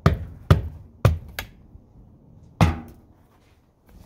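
Sharp taps on a hard surface, about five at an uneven pace, the last with a short ringing tail.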